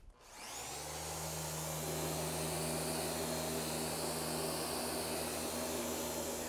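Random orbital sander with 180-grit paper starting up just after the beginning, winding up to speed over about a second, then running steadily with a hum and the hiss of the pad sanding a Douglas fir floor.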